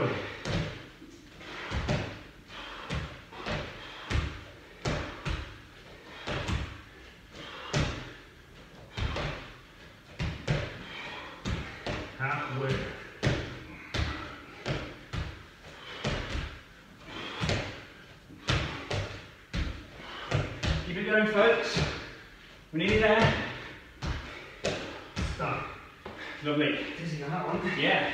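Repeated thuds of trainer-clad feet landing on rubber gym floor mats during squat jumps, about one or two landings a second.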